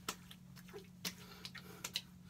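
Hands patting witch hazel onto a freshly shaved face and neck: a few faint, light pats at irregular spacing.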